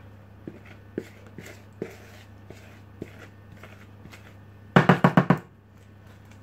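Spatula scraping cake batter from a mixing bowl into a paper-lined loaf tin: light scrapes and small taps, then a quick run of about six sharp knocks of the spatula against the bowl about five seconds in. A low steady hum from the heating oven runs underneath.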